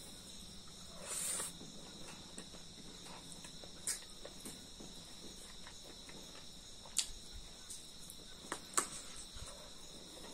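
Steady high-pitched chirring of crickets, with a few sharp clicks and smacks from eating rice by hand.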